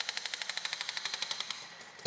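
Hydraulic breaker hammer on a backhoe loader pounding a concrete column: a rapid, steady train of blows, more than ten a second, fading out near the end.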